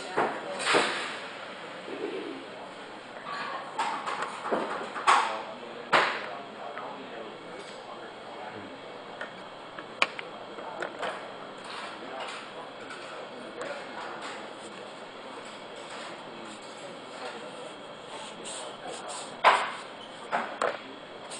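Indistinct voices of people talking in a room, with a few short, louder swishes about one, five, six and nineteen seconds in.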